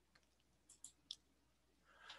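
Near silence with three faint, short clicks close together about a second in.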